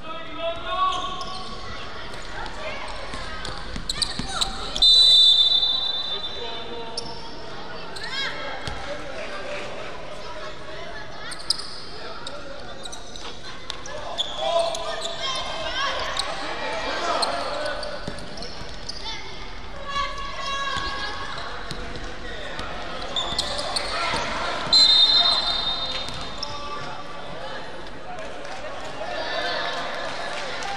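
Basketball bouncing on a gym floor, with children's voices echoing in a large hall. A referee's whistle blows sharply twice, about five seconds in and again near the end.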